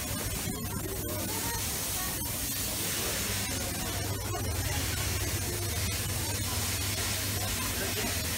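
Steady hissing noise with a constant low hum beneath it and faint, indistinct voices in the background.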